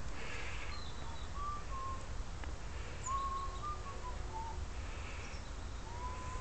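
Birds calling in the trees: a scatter of short, thin whistled notes, some rising or falling slightly, over a steady low outdoor rumble.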